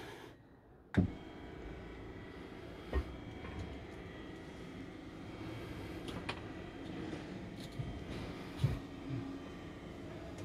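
Electric drop-down bed's lift motor running steadily as the bed is raised. It starts with a click about a second in, with a few light knocks along the way.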